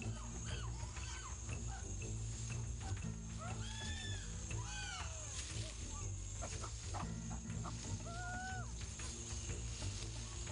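Chimpanzees screaming in short, high, arching calls, a few near the start, a cluster around the middle and a pair near the end, over sustained low music chords that change every few seconds.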